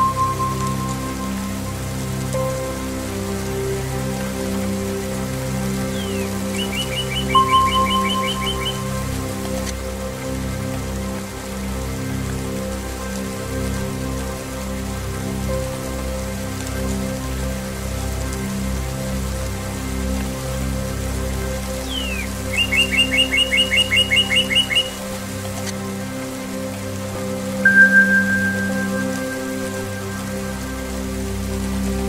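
Steady rain falling into puddles, under a soft zen music bed of sustained low tones. Singing-bowl strikes ring out and fade at the start, about 7 seconds in and near the end, and a bird gives a quick trill of rapidly repeated notes twice, about 7 and 23 seconds in.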